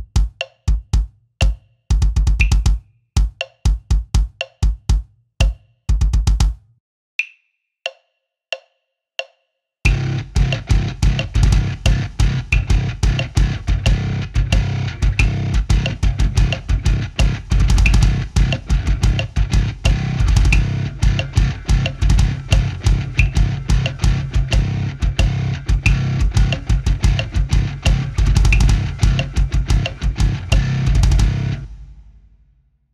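Double bass drum pedals playing a syncopated kick-drum riff over a metronome click, slowly at first. After about 6.5 s the kicks stop and the click counts four beats alone. From about ten seconds in, the riff runs at a faster tempo with a fuller backing sound underneath.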